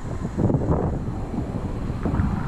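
Wind buffeting the camera microphone in uneven gusts, a stronger gust about half a second in.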